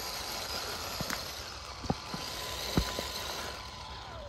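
Amewi Gallop 2 1/10-scale RC crawler creeping over a gravel trail: steady motor and drivetrain noise, with a few sharp clicks as the tyres knock over stones and twigs.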